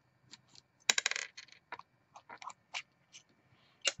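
Small metal parts of a rebuildable tank atomiser clinking and clicking as it is unscrewed and taken apart with a screwdriver. A ringing metallic clink about a second in is the loudest sound, followed by a few light clicks.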